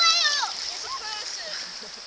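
Water splashing and lapping in the shallows, with a child's high, wavering squeal in the first half-second and a few fainter short cries after it.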